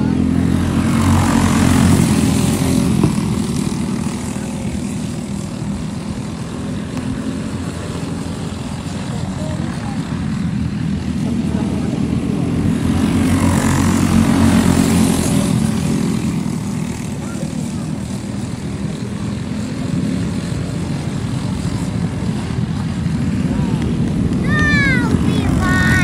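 Racing go-kart engines running continuously, swelling loudest as karts pass close about two seconds in and again around fourteen seconds in.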